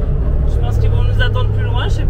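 Steady low drone of a MAN KAT 4x4 truck's engine and drivetrain heard from inside its metal cab while driving, with a woman talking over it.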